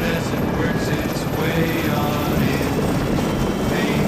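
A helicopter running, with its rotor blades beating fast and steadily over engine noise.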